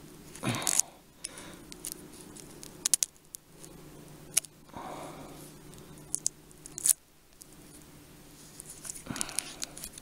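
Duct tape being stretched tight around a plastic knife sheath and ferro rod and pressed down by fingers: short scratchy rubbing sounds with a few sharp small clicks.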